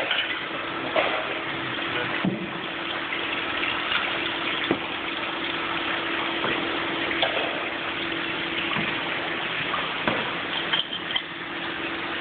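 Steady rush of water and liquid handling over a constant machine hum, with a few short clinks and knocks, as bottles are rinsed in tubs and filled at a bottling station.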